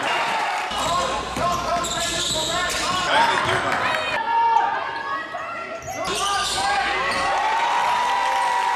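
Basketball game sounds in a gym: the ball bouncing on the court amid players' and spectators' voices. The sound changes abruptly twice, where clips from different games are cut together.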